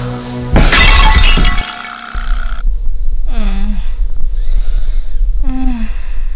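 A loud glass-shattering crash about half a second in, over dramatic music that stops about two seconds in. Then a low steady rumble with two short, falling moans from a girl.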